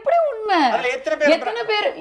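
Only speech: a woman talking animatedly, her voice sliding widely up and down in pitch.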